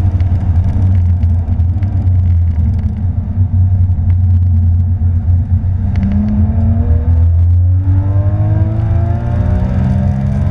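Porsche 911 GT3's flat-six engine heard from inside the cabin under hard acceleration on a track, over a heavy low rumble. In the second half the engine pitch climbs, breaks off briefly at a gear change, then climbs again.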